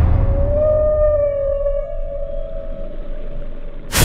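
A killer whale call: one long pitched whistle that rises slightly and is then held, fading after about two and a half seconds, over a steady low drone. A sudden loud burst of noise cuts in at the very end.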